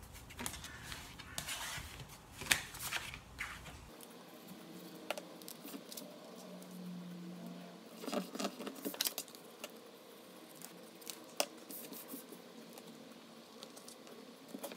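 Sheets of cardstock and patterned paper being handled, laid down and smoothed flat by hand on a wooden table: light rustles and paper slides with occasional sharp taps.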